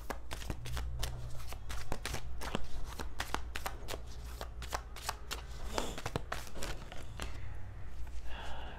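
A tarot deck being shuffled in the hands: a quick, irregular run of short card clicks and slaps.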